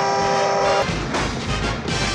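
A car horn blares steadily for about a second, then cuts off, over film score music. Another held tone starts near the end.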